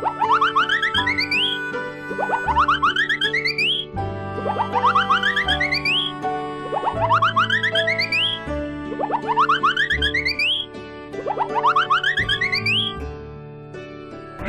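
Children's background music with a cartoon sound effect laid over it. The effect is a run of quick upward-sliding tones, repeated about six times, roughly every two seconds, in time with balls flying into a toy truck's bed.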